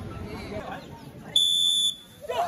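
A single whistle blast, one steady shrill note about half a second long, about a second and a half in: the start signal for a group of runners in a 1600 m race. Low crowd chatter comes before it.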